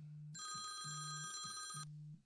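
Phone ringing with an incoming call: a faint electronic ring of several steady high tones, held for about a second and a half, under a low tone that pulses on and off.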